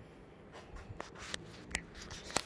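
Faint handling noise from a hand-held camera being lifted and turned: light rubbing with a few soft clicks.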